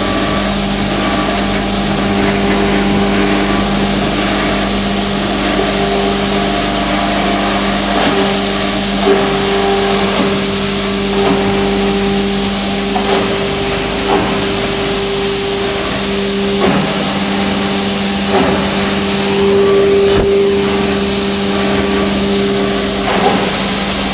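Electric EPS polystyrene foam shredder running steadily: a constant motor hum with a higher steady tone and a hiss above it, as foam sheets are fed into the hopper and shredded into beads.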